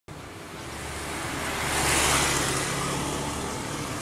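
A road vehicle passing by on a street, its tyre and engine noise swelling to its loudest about two seconds in and then slowly fading.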